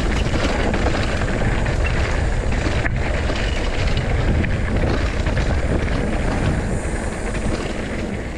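Mountain bike riding a dirt trail: a loud, steady rush of wind buffeting the microphone, heaviest in the low end, mixed with tyre noise and small rattles and clicks from the bike.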